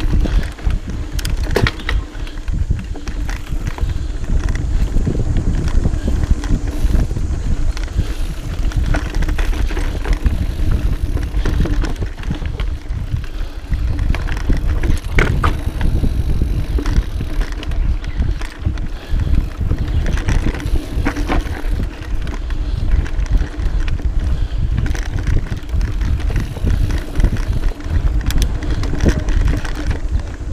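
Mountain bike riding down a dirt singletrack: a continuous rumble from the tyres on the trail, with frequent clicks and knocks as the bike rattles over bumps and roots.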